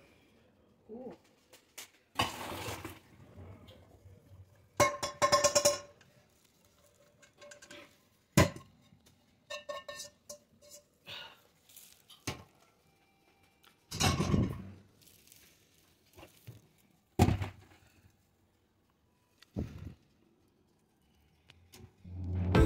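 A perforated metal skimmer knocking and scraping against a steel pan and pot while scooping parboiled basmati rice. The knocks come as separate, irregular clanks and thunks a few seconds apart, and one of them rings briefly about five seconds in.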